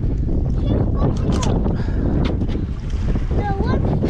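Wind buffeting the microphone over water sloshing against a small boat's hull, a loud low rumbling noise, with a few sharp clicks about a second in.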